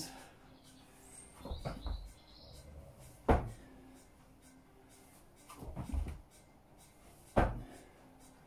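Thuds of hands and feet landing on an exercise mat during down-ups, jumping down into a plank and jumping back up: about two repetitions, each with a softer shuffle followed by a sharp single thud, the sharp ones about four seconds apart.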